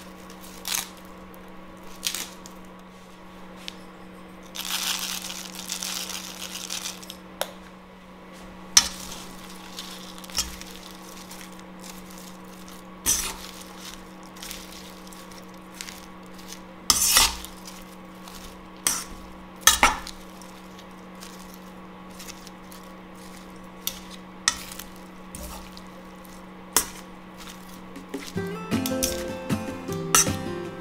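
Metal tongs tossing a leafy salad in a stainless steel bowl, with scattered sharp clinks of metal on metal over a steady low hum. About five seconds in there is a hiss lasting some three seconds, and acoustic guitar music starts near the end.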